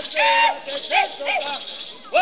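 Group of men chanting a Fulni-ô ritual song in calls that glide up and down: one held call near the start, then two short ones about a second in, with rattles shaken in short bursts.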